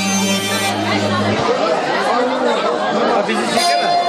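Traditional dance music with an accordion sound stops about a second in, leaving a crowd of guests chattering in a large hall. A single steady tone comes in near the end.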